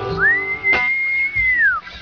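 A person's loud whistle of approval as the song ends: one long note that swoops up, holds steady and then falls away, over the last acoustic guitar chord dying out. A single knock sounds partway through.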